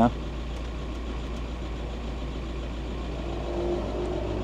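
VW T5 Transporter engine idling steadily with a low rumble, heard from inside the cab.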